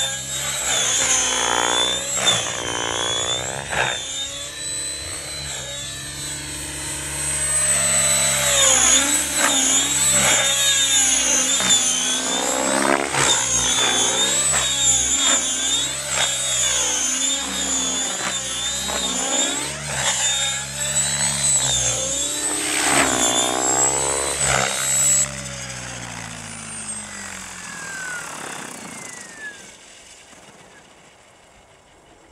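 Align T-Rex 700E electric radio-controlled helicopter flying, its high motor whine and rotor noise rising and falling in pitch as it manoeuvres. About 25 s in the whine cuts out and the rotor winds down with a falling pitch, the helicopter on the ground.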